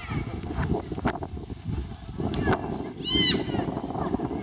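Children's high-pitched shouts and calls across a football pitch, with a few short calls and one louder rising-and-falling yell a little after three seconds in, over a low steady rumble.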